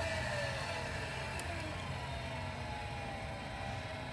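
A motor running with a steady low hum and a faint whine that slides slowly down in pitch over the first two seconds.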